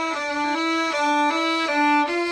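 Violin and viola bowing together on the D string, one finger tapping down and up so the pitch steps back and forth between two neighbouring notes, about three notes a second. This is a finger-independence exercise for keeping the non-playing fingers curved and still.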